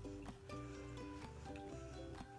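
Quiet background music: a light melody of short, separate notes over a steady low bass.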